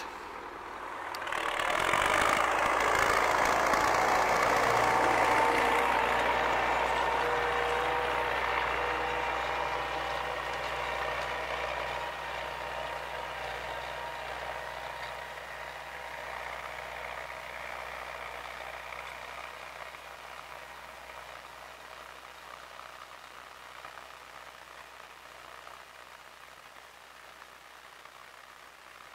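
MTZ-80 tractor's four-cylinder diesel engine working under load, pulling a three-bottom plough through sod. The sound is loudest a few seconds in and fades steadily as the tractor moves away.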